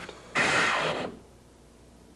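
Truck S-cam air brake: one short hiss of compressed air, under a second long, at the brake chamber and slack adjuster.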